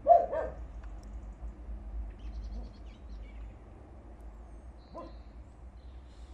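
A dog barking: two quick barks right at the start, the loudest sound here, and a single fainter bark about five seconds in. Faint bird chirps come in between.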